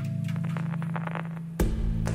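Live electronic music: a steady low synthesizer chord under a flurry of fine crackling clicks, then a deep bass thump about one and a half seconds in as the chord changes.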